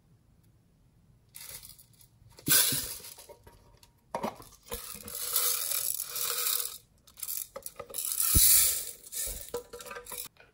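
Small beads rattling and sliding around inside a tin box and pouring out into a glass dish, with clinks of the tin. It starts about a second and a half in, after a quiet opening, and comes in stretches, loudest near the middle and again near the end.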